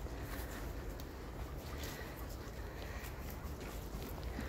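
Soft footsteps walking on grass, faint and evenly spaced, over a low steady rumble.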